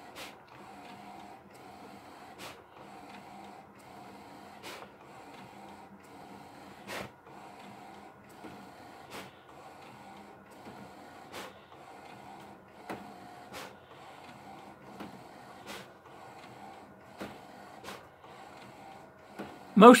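HP large-format inkjet printer running a print: a steady whir broken by a sharp click about every two seconds.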